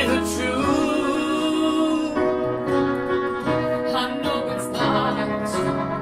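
Upright piano and strummed acoustic guitar playing a song together, with a held sung note in the first couple of seconds.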